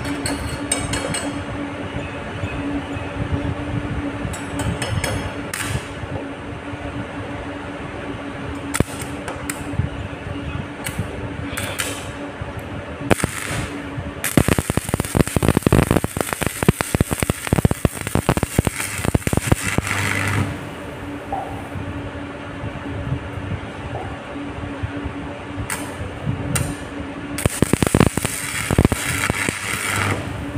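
Homemade arc welder built from a ceiling-fan stator on 220 V mains: the electrode crackles and spits as the arc burns on a steel plate, in one long run of about six seconds from about halfway and again near the end, after a few sharp scratches as the rod is struck. A steady electrical hum runs underneath.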